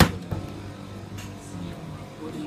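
A sharp knock, then a smaller one just after, as the flap of a vending machine's delivery hatch falls shut behind the hot yakisoba box, over a steady low hum.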